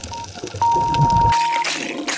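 Countdown-timer beeps: a short electronic beep, then a long one held for about a second, signalling the start of the clock. A loud rush of hissing noise comes in near the end.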